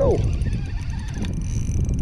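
Wind rumbling on the microphone over open water, with a faint steady high-pitched whine.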